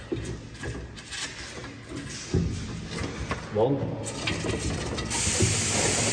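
Clicks, knocks and rattles of hard plastic fittings as a bicycle rear wheel is secured into the wheel mount of a hard-shell bike box. A steady hiss comes in suddenly about five seconds in.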